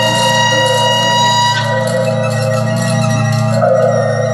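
Live experimental, minimalist folk music: a steady low drone under several held high ringing tones, some of which drop away about a second and a half in.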